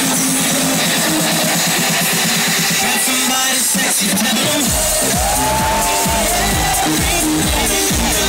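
Loud electronic dance music from a DJ's sound system. The deep bass is missing for the first half, then comes back in heavily a little past halfway, with sliding bass notes.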